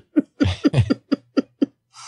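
A person laughing: a run of about eight short voiced bursts that fade out over about a second and a half.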